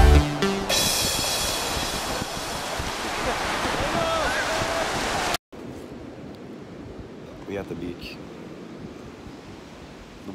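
The tail of a music track ends in the first second, then breaking ocean surf and wind on the microphone make a loud, even rush. It cuts off suddenly about halfway through, giving way to quieter surf with a few faint voices.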